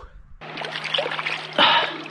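Shallow creek water trickling and splashing around a hand working in it, with a louder splash shortly before the end.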